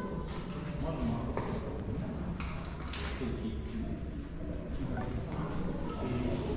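Indistinct voices of other visitors talking in a stone-walled hall, with a few footsteps and knocks among them.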